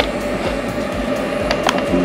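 A mains plug clicks into the AC outlet of a 1500 W power inverter, followed by a steady electrical hum as the inverter takes up the load of charging a portable power station, with a couple of light clicks about a second and a half in.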